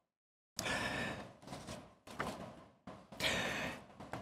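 Quiet breaths of a man into a close podium microphone, a few soft exhalations and inhalations with no words. The first half-second is dead silence.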